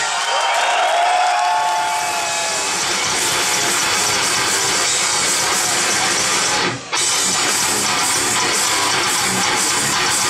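Live heavy metal band playing loud with distorted electric guitars and drums, recorded from the audience. In the first two seconds a high held guitar line rings with little bass under it, then the full band comes in, with a brief break just before seven seconds in.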